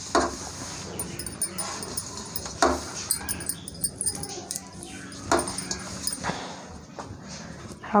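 A hand rubbing and scraping flour against a steel plate, working oil into the dry flour (the moyan that makes the kachori crust flaky). A few short, sharp sounds stand out a second or two apart.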